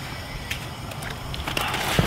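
Soft rustling and a few small clicks as a sonar transducer and its cable are handled, over light wind noise on the microphone.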